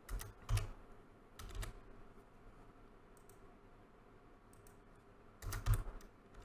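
Computer keyboard keystrokes in scattered short groups: a few near the start, faint single taps in the middle, and a quicker, louder run of several near the end.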